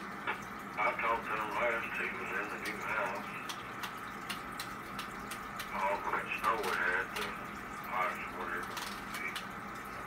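Voices of radio amateurs received over a 2-meter FM repeater on an RTL-SDR receiver and played through a speaker: thin, narrow-band radio speech in several spells, over a steady background noise.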